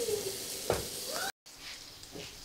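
Button mushrooms sizzling as they fry in a pan, cutting off abruptly a little past halfway; after that only a faint hiss.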